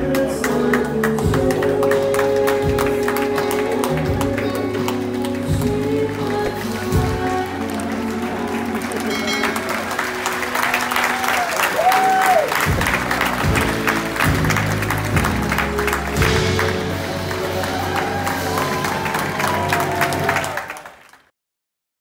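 Live band playing pop-rock music with a steady drum beat and bass, with audience applause and voices over it; the sound fades out quickly about a second before the end.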